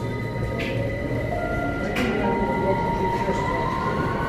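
A London Underground train running through a nearby tunnel, heard from inside a disused passageway: a steady low rumble with a whine rising in pitch and steady tones above it. Two sharp clicks come about half a second and two seconds in.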